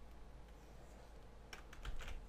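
A quick run of about four clicks of computer keys near the end, over a faint steady low hum.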